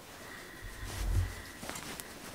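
A cloth quilt being lifted and handled close to the microphone: soft low rustling and bumping, strongest about a second in.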